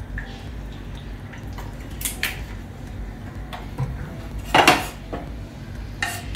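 Cooking utensils knocking against a frying pan and dishes: a few light clinks, then one louder clatter about four and a half seconds in.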